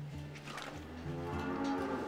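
Dairy cows mooing low, with one long drawn-out moo through the second half, over soft background music.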